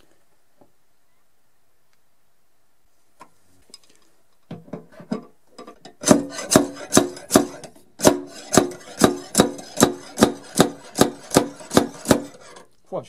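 A slide hammer from a paintless dent repair kit is yanked back against its stop again and again, about two and a half sharp metallic knocks a second, pulling on a glue tab stuck to a car body panel to draw out a dent. Before that there are a few faint clicks as the hammer is fitted.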